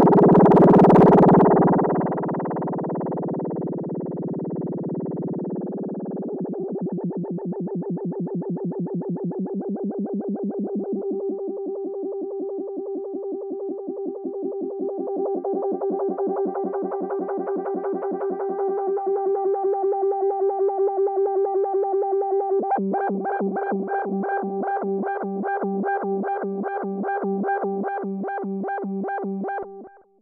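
Moog Grandmother synthesizer holding a drone through an Eventide Rose delay while the pedal's modulation is dialled in: the held tone wavers and pulses. Near the end it jumps back and forth between two pitches an octave apart, about three times a second. This is square-wave modulation of the delay time.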